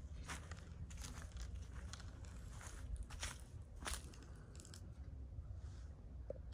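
Footsteps crunching over dry grass and leaves, faint and irregular, as the person filming walks up to the porch.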